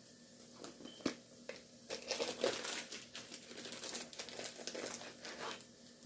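Crinkling and rustling as a packet of dried bay leaves is opened and searched for a leaf. It starts with a few faint crackles and becomes busier from about two seconds in until shortly before the end.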